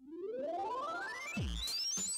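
Electronic intro of a children's English coursebook chant: a synthesizer tone sweeping steadily upward in pitch, with drum-machine bass drum beats coming in near the end.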